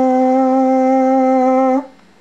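A voice holding one long, steady, loud note that breaks off abruptly near the end.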